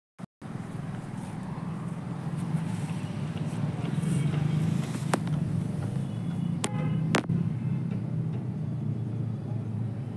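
A steady low engine hum runs throughout. A few sharp clicks come about five and seven seconds in, one of them with a short squeak.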